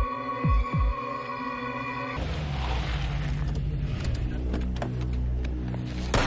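Tense drama score: a held synth chord over deep, heartbeat-like double thumps. About two seconds in, the chord cuts off and a low rumbling drone takes over.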